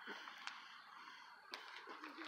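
Near silence: faint background hiss, with a faint click about half a second in and another near the end.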